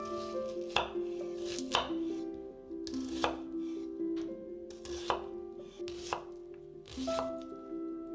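Chef's knife cutting through an onion and knocking on a wooden cutting board, one sharp tap about every second, over background music.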